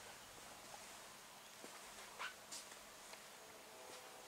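Near silence: faint room tone, with a few small, faint clicks about two seconds in.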